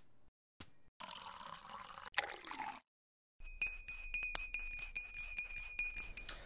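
Hot water poured into a ceramic mug, then a teaspoon stirring the tea, clinking quickly against the mug so it rings.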